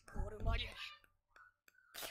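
Quiet speech: a character's voice from the anime episode playing, mostly in the first second, with a low rumble under it.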